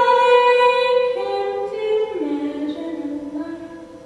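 Unaccompanied voices in sustained song: one voice holds a steady high note while a second voice enters about a second in and steps down to a lower held note, the sound slowly fading.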